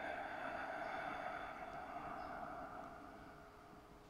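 A long, slow exhale that starts just before and fades away over about three seconds.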